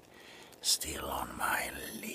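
A man whispering softly close to the microphone, with a short hiss of breath or a sibilant about a third of the way in.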